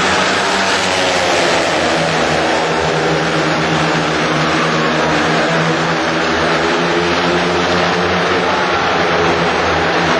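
Several speedway bikes' 500cc single-cylinder methanol-burning engines racing around the track, blending into one loud, steady drone.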